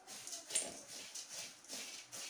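Puffed rice being stirred with a metal ladle in an aluminium kadai: a rhythmic rustling scrape of ladle against pan and dry grains, about two to three strokes a second.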